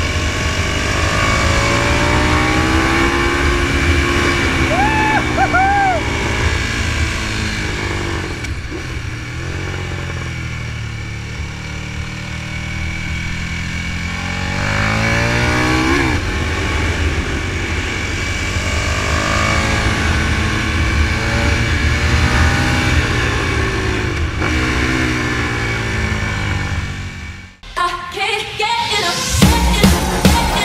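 Motorcycle engine heard from on board over steady wind hiss, revving up and down repeatedly as the bike accelerates and backs off through the bends. The sound drops out briefly near the end.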